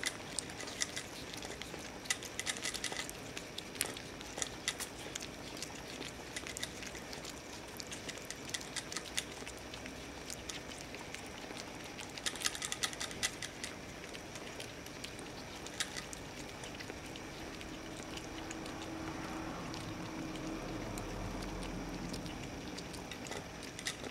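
Young flying fox chewing a piece of apple, working the juice out of the pulp: small wet clicks and smacks that come in scattered clusters.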